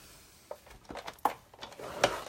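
A few light, sharp plastic clicks and knocks, spaced out: a closed embossing folder and the Big Shot die-cutting machine's plates being handled and stacked before cranking.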